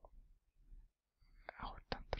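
Faint whispered muttering under the breath, mostly quiet for the first second, with a couple of short clicks near the end.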